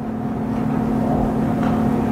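Steady low hum with a fainter, higher steady tone over it and a low rumbling noise underneath.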